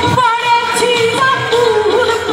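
A woman singing a Baul folk song through a stage PA, her voice gliding through ornamented, bending notes and settling on a wavering held note near the end.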